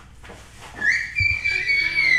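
A high, whistle-like tone starts a little under a second in, glides up, holds steady for about a second and a half, then bends down at the end. A few soft low thumps sound under it.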